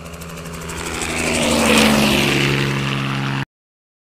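Propeller-aircraft flyby sound effect: a steady engine drone that swells to a peak about two seconds in, dipping slightly in pitch as it passes, then holds and cuts off suddenly about three and a half seconds in.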